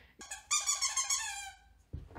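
A dog whining: one long, high-pitched whine that slides gradually down in pitch for just over a second.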